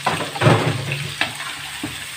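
Chopped onions sizzling in hot ghee in a pot with fried duck liver and gizzards as they are stirred in. There is a louder burst of sizzling and scraping about half a second in, and a couple of light clicks later.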